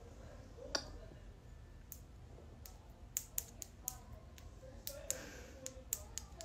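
Irregular sharp clicks close to the microphone: one about a second in, then about a dozen more, coming faster in the second half, over a faint low hum.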